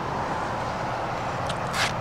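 Steady noise of car traffic passing on a nearby road, a continuous rush of tyres without any distinct engine note.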